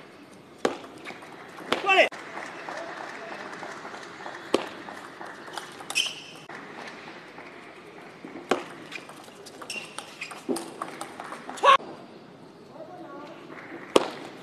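Table tennis rallies in a hall: the plastic ball clicking sharply off bats and table in short sequences, shoes squeaking now and then on the court floor, over a steady crowd murmur with voices rising near the end.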